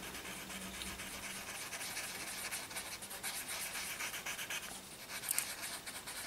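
Paper tortillon rubbing over journal paper, blending white charcoal in soft, faint scratchy strokes, a little stronger about five seconds in.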